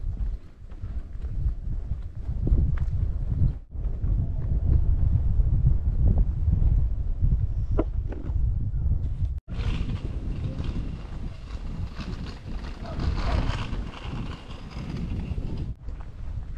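Wind buffeting an action camera's microphone with a deep, uneven rumble, with footsteps on the path mixed in. The sound cuts out abruptly twice, about a third of the way in and just past the middle.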